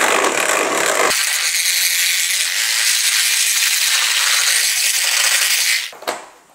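Electric hand mixer running at full speed, its beaters whirring through runny pancake batter in a plastic bowl, loud and steady; it is switched off just before the end.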